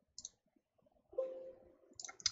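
A quick computer mouse click about a fifth of a second in, then a brief low steady hum about a second in.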